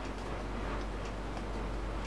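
Pen writing on ruled notebook paper: faint, irregular ticking and scratching of the nib as letters are formed, over a steady low hum.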